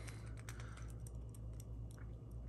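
Faint scattered light clicks and ticks from a hard plastic crankbait with treble hooks being handled and turned in the fingers, over a low steady hum.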